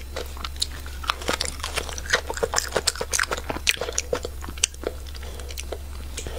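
Close-miked chewing of crunchy raw vegetables: irregular, sharp, wet crunches, several a second.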